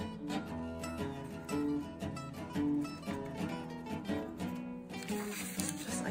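Background music: a plucked acoustic guitar picking out a run of notes.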